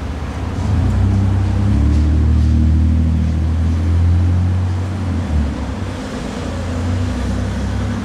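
Low engine rumble of a motor vehicle in the street, swelling over the first few seconds and easing off after about five seconds.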